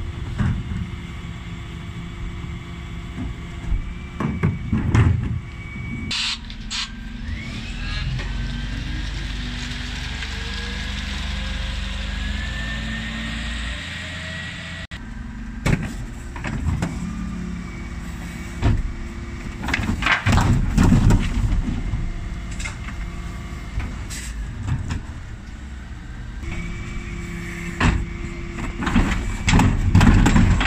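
Dennis Elite 6 refuse lorry's diesel engine running, rising in pitch for several seconds as it revs to drive the hydraulic bin lift and compactor. Wheelie bins clank and bang against the Terberg lift several times, and there is a short hiss of air about six seconds in.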